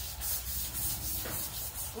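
Rhythmic scratchy rubbing noise, pulsing about four times a second, over a low rumble.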